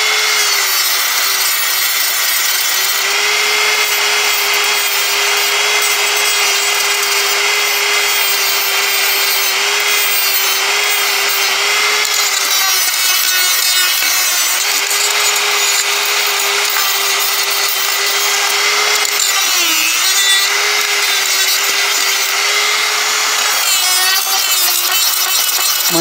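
Handheld rotary tool with a sanding attachment sanding a wood carving: a steady high motor whine over the rasp of abrasive on wood, the pitch dipping briefly twice.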